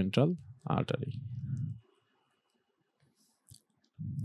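A man speaking briefly, then a pause with one faint click about three and a half seconds in.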